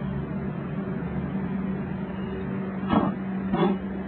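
A steady low mechanical hum, like an engine or machine running, with a couple of short sounds about three seconds in.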